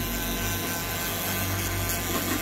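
Pen-style rotary grinder running steadily, its bit grinding at the plastic inner frame of a smartphone with an even whir over a low hum.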